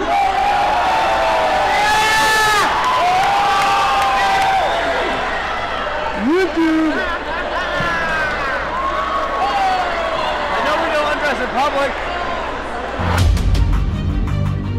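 Spectators at a cage fight shouting, whooping and cheering, with long hoots that rise and fall in pitch. About a second before the end, theme music comes in.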